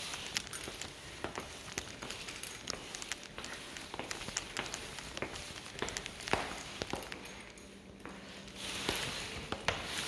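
Footsteps on a hardwood floor: irregular soft knocks and clicks as someone walks through the rooms. A faint steady hum comes in near the end.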